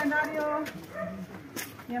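Indistinct voices of people talking, with no clear non-speech sound.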